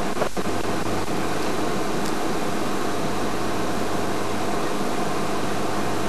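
Safari game-drive vehicle's engine idling steadily: a low, even hum under a hiss.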